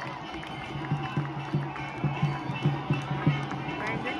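Drums beating a quick, steady rhythm, about four to five beats a second, with a crowd's voices over it.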